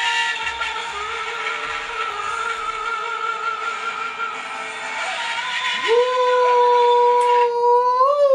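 Live pop ballad: a singer with band accompaniment. About six seconds in, a voice swoops up into one long, loud belted high note, which is held on as the accompaniment drops away near the end.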